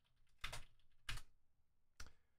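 Computer keyboard being typed on: two short, faint clusters of keystrokes, about half a second and a second in, with a lighter tap or two near the end.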